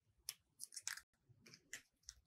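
Small scissors snipping through folded paper, a series of short, faint snips as petal shapes are cut out.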